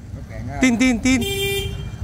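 Motorbike horn pressed once, a single steady beep lasting a little over half a second near the end.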